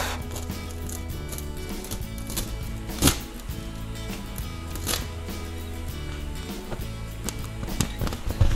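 Soft background music plays throughout. A few short crinkles and taps come from vinyl transfer tape being peeled off and smoothed onto a clear plastic-film balloon; the sharpest is about three seconds in.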